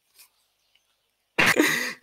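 Near silence for over a second, then a sudden short, breathy burst of noise from a man's throat, lasting about half a second near the end.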